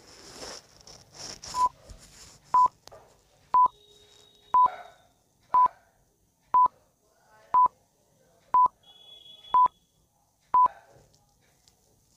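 Countdown timer beeps: a short, high beep with a click once a second, about ten in a row, ticking off the 10 seconds given to answer.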